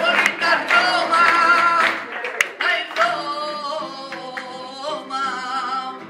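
A flamenco-style rumba song: a male voice sings a wavering, ornamented line into a microphone over a strummed acoustic guitar. The strumming is loudest in the first two seconds, then the music eases into softer held notes.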